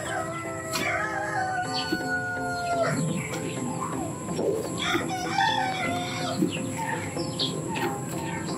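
A rooster crows, one long drawn-out call in the first three seconds, and chickens cluck and call through the rest.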